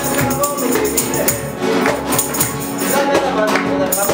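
Live acoustic group: several nylon-string guitars strummed in a driving rhythm, with a cajón keeping the beat.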